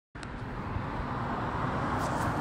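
Steady road traffic noise with wind on the microphone, a continuous hiss with no distinct engine note that grows gradually louder.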